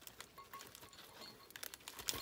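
Faint rustling and crinkling of crinkle-paper shred and a fabric bag being handled, with a few light clicks.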